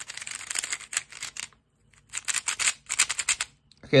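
Moyu WRM V10, a 3x3 magnetic speedcube with a ball core, being turned quickly for its first turns: rapid runs of plastic clicks from the layers, with a half-second pause in the middle. It turns pretty fast and feels a little loose.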